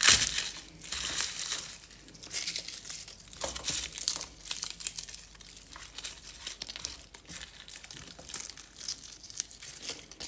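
Garlic cloves crushed under the palm on a cutting board at the start, then their dry papery skins crinkling and tearing as the smashed cloves are peeled by hand, with small ticks and taps on the board.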